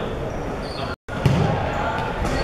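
Echoing sports-hall ambience of indistinct voices and a ball thudding on the hard court floor, with a louder thud just after the sound cuts out briefly about halfway through.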